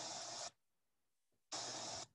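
Rushing floodwater over rocks, heard through a video call's audio as a steady hiss that cuts in and out: one burst ending about half a second in, another starting about a second and a half in.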